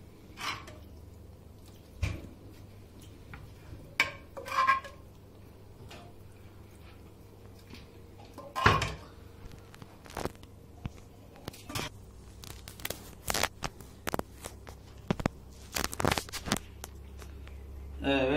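Intermittent clinks and knocks of a metal ladle against a cooking pot and baking tray as hot sauce is spread over cauliflower, with a run of quicker, lighter clicks near the end.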